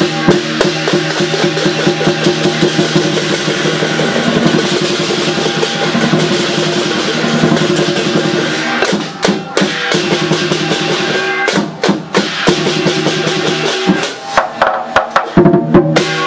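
Lion dance percussion: a row of large brass hand cymbals clashed together over a drum beat, dense and continuous. It breaks off briefly a couple of times and ends in a string of separate, sharply accented strikes.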